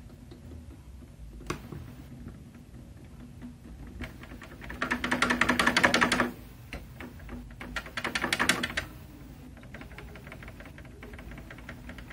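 Two bursts of rapid clicking and rattling, the first with a low steady buzz under it, from tapping and prodding components on a CRT television's circuit board while hunting for a bad contact.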